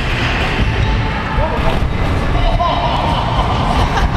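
Scooter wheels rolling over wooden skatepark ramps as a steady low rumble, with brief distant shouts partway through.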